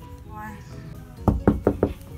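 Four quick knocks on an interior door, struck by hand, a little past halfway through, over background music.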